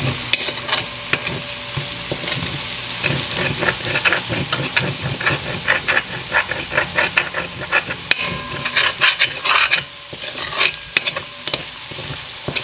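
Grated garlic sizzling as it fries in a little oil in a pot, with a spoon stirring it and scraping against the pot in quick, irregular strokes.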